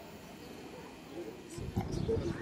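Faint outdoor background noise, steady and without a clear single source, with a low rumble and the faint start of a man's voice in the last half second.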